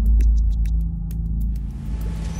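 Low, steady droning rumble with a few held low tones, and a fast, irregular patter of faint clicks above it that stops about one and a half seconds in.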